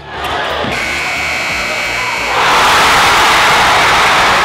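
Gym crowd noise, then the steady electronic horn of the game-clock buzzer for about a second and a half, signalling that time has expired. Just as the buzzer stops, the crowd erupts into loud cheering.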